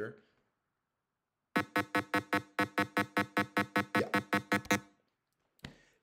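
A 200 Hz square wave from a home-made Python synthesizer, played as a fast train of short, evenly spaced beeps, about five a second, rich in overtones. It starts about a second and a half in and stops about a second before the end, recorded through a laptop microphone.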